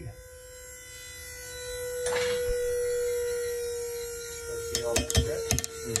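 The pull-test rig runs with a steady electric whine as it loads an 8 mm rope tied into a Dyneema cave anchor. The whine grows louder and then eases, with a sharp crack about two seconds in and a few clicks near the end.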